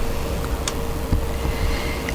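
Steady low rumble and hiss with a faint constant hum, and one light click about two-thirds of a second in.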